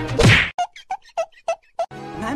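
Cartoon-style comedy sound effects: a loud whoosh with a falling pitch, then a quick run of about five short pitched blips with silence between them.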